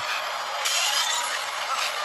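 An action-movie soundtrack played loud through the LG V30's built-in loudspeaker, its volume raised by a speaker-booster app. It is a dense, hissy rush of effects with no bass at all.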